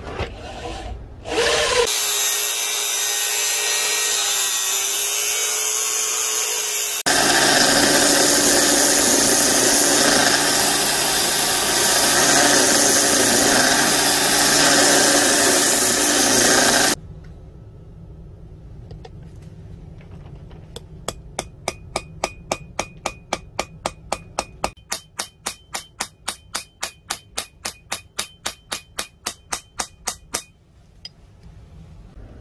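Drill press running and boring through the knife's steel tang, then a loud, steady grinding as a threaded steel rod is ground against an abrasive belt. After a short lull, a hammer strikes steadily, about three blows a second, peening the handle pins on an anvil.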